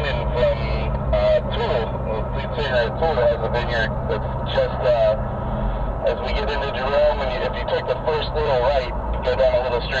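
Indistinct talking over the steady low drone of a vehicle's engine and tyres heard from inside the cabin at highway speed; the drone shifts about six seconds in.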